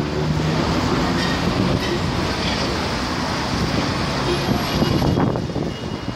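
Steady city traffic noise from a busy road with buses and cars, an even wash of sound with no single event standing out.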